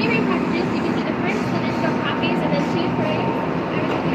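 Indistinct background voices over a steady hum and noise, with no distinct events.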